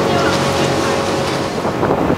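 Motor of a small wooden water taxi running steadily under way, with wind buffeting the microphone.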